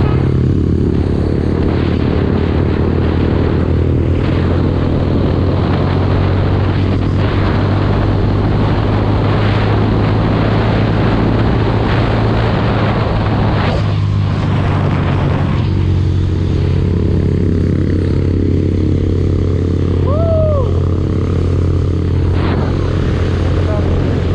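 Mahindra Mojo 300 single-cylinder motorcycle cruising at road speed: a steady engine drone with wind rushing over the camera microphone. A brief high tone rises and falls about twenty seconds in.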